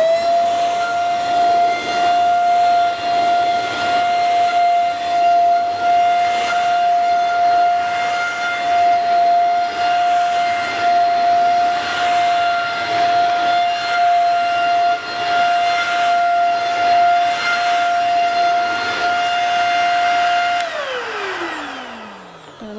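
Alfawise SV-829 700 W handheld vacuum cleaner running as its floor brush is pushed over carpet: a steady, loud high-pitched motor whine. Near the end it is switched off, and the pitch falls as the motor winds down.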